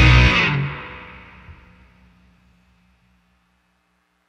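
The last chord of a live rock song: the band, with distorted electric guitar and drums, stops about half a second in. The guitar chord rings on and fades out over about two seconds.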